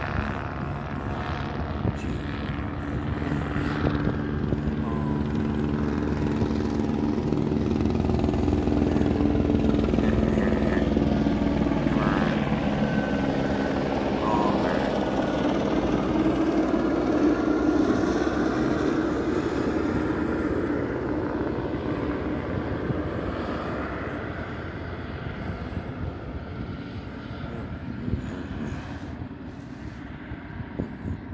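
Helicopter flying over with a steady rotor and engine drone. It grows louder toward the middle and fades away over the last several seconds as it passes.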